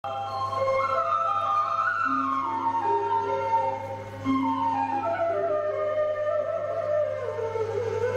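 Slow melody on a flute-like wind instrument, long held notes gliding from one pitch to the next, over a steady low hum.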